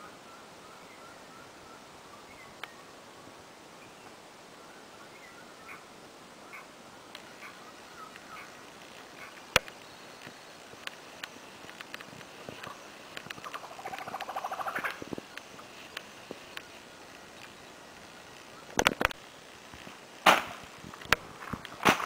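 Quiet rainforest ambience with faint, short chirping calls of small birds or insects, a buzzy trill in the second half, a single sharp click about halfway, and a few louder knocks near the end.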